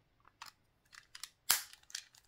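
Light plastic clicks from handling a Beyblade X Bey Battle Pass, then one sharp snap about one and a half seconds in as its clear plastic flap clicks shut onto the body.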